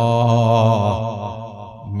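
A man's voice chanting one long held note with a wavering, ornamented pitch, fading out in the second half, over a steady low hum.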